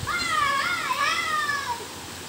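A child's high-pitched voice singing or calling out one long, wavering phrase.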